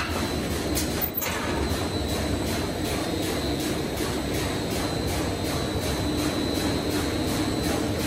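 Spiral paper-tube winding machine running steadily as it forms a 24-ply, 146 mm paper tube: an even mechanical noise with a faint, regular ticking and a faint steady high whine.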